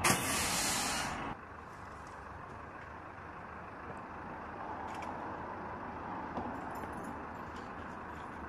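Road traffic: a steady rumble of motor vehicles. A loud hiss fills the first second or so, then cuts off abruptly.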